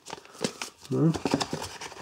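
Paper leaflet and cardboard packaging rustling and clicking as they are handled and unfolded, with a brief voiced sound from the man about a second in.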